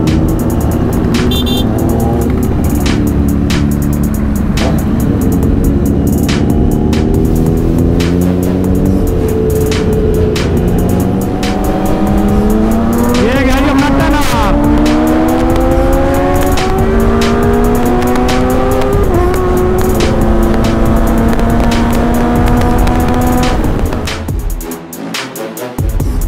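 Motorcycle engine accelerating up through the gears, its pitch climbing in a series of steps and dropping back at each upshift, under music with a steady beat.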